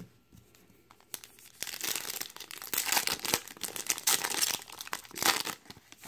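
Foil wrapper of a 2017 Topps Update Series baseball card pack crinkling and tearing as it is ripped open by hand, starting about a second in.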